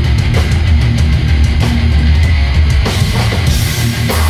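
Hardcore punk band playing live and loud: distorted electric guitars, bass and a pounding drum kit in a dense wall of sound, turning brighter near the end.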